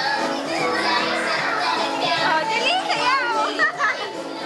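Music playing for a children's dance, with young children's chatter and high calls over it, the calls strongest near the end.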